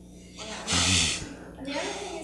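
A short, loud breathy burst from a person about a second in, then faint speech.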